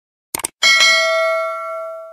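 Subscribe-button sound effect: a quick double mouse click, then a bell chime that rings out, fades slowly and stops abruptly.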